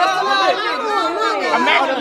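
Several people talking over one another: loud, overlapping chatter.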